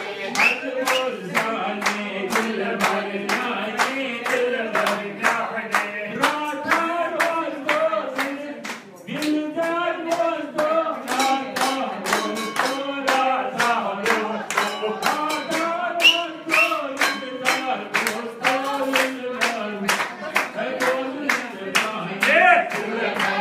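A group of voices singing together, with steady rhythmic hand clapping in time. The singing eases briefly about nine seconds in.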